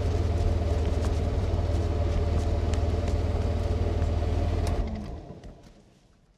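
Side-by-side utility vehicle's engine running steadily with a low rumble as it drives on a dirt track, fading out near the end.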